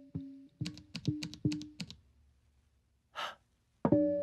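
Sparse soundtrack of short pitched notes with sharp clicking attacks, each dying away quickly. A quick run of them comes about a second in, then a pause, then a short breathy gasp-like sound near the end, followed by another note.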